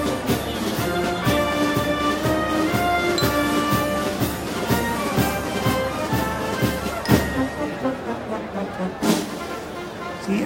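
A brass band playing held brass notes over a steady beat, getting quieter over the last couple of seconds.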